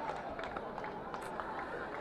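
A pause in amplified speech: faint background noise of an outdoor gathering, a low even hiss with a few soft ticks.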